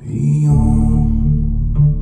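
Upright double bass playing low, sustained notes, with a low wordless vocal drone over it.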